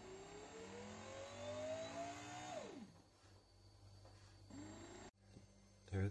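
Tefal Pain Doré bread maker's kneading motor spinning up, its faint whine rising steadily in pitch for about three seconds and then falling away quickly as it stops. It starts to spin up again about four and a half seconds in, just before the sound cuts off suddenly.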